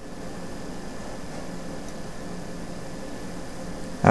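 Steady whir of a running desktop computer's cooling fans, an even hiss with a faint low hum underneath.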